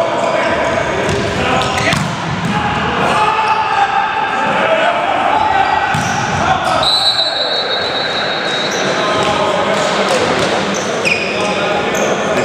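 Volleyball rally in a large sports hall: sharp hits of the ball, one of them a spike into the block about six seconds in, under players' shouts and calls that echo round the hall.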